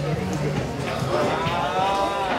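Busy room chatter with one person's long, drawn-out vocal sound starting a little past halfway, its pitch arching up and back down.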